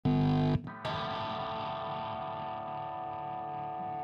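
Instrumental music: a short loud chord that cuts off about half a second in, then a long held chord with effects that rings on steadily.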